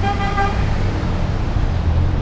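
A vehicle horn gives one short toot, about half a second long, at the start, over the steady low rumble of passing street traffic.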